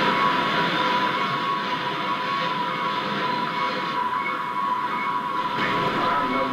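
Film soundtrack playing from a television: music over a steady rushing noise, with a high held tone running through it.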